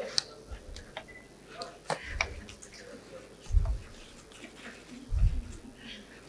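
Scattered sharp clicks and four dull low thumps spread over a few seconds, with faint voices in the background.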